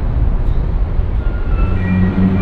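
Wind buffeting the microphone and a low rumble while riding along a city street. A few steady tones come in near the end.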